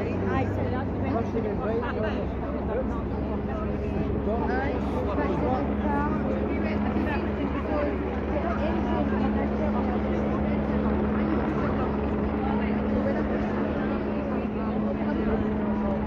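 Police helicopter overhead, a steady drone with a constant hum, heard under the chatter of a crowd.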